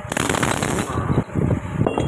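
A wrench working the nut of a breaker puller, giving a rapid, uneven metallic clatter, with a loud burst of hiss during about the first second.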